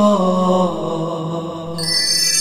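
Wordless chanted singing on a held 'oh' that slides down to a lower note early on and holds it. Higher steady tones come in near the end.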